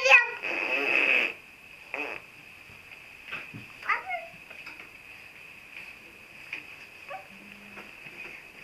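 Baby's voice: a loud, high-pitched squeal at the start, running into a breathy, raspy shriek about a second long, then a few short, quieter coos and babbling sounds.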